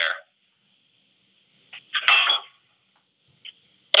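A short vocal sound, about half a second long, over a telephone conference line about two seconds in, with silence on either side and a faint click near the end.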